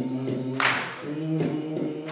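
A man's voice singing wordless, held notes unaccompanied into a microphone, the pitch stepping slowly between long notes, with two short hissy bursts about a second and a half apart.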